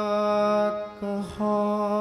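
Harmonium holding a steady drone chord, breaking off about a second in and coming back on a slightly different set of notes, with a brief low thump in the gap.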